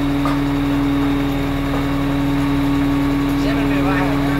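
Crane engine running at a steady speed, a constant even hum, while it holds a steel frame aloft on its hook.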